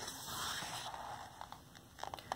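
A paper page of a picture book being turned by hand: a soft rustling swish over about the first second, fading out, followed by a few faint ticks.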